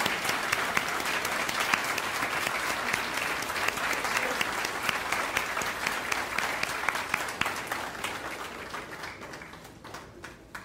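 Audience applauding, a dense, steady patter of many hands clapping that thins out and dies away over the last two seconds.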